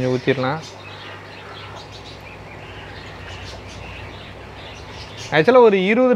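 Faint bird chirps over a steady background hiss and low hum, with a man's voice briefly at the start and again near the end.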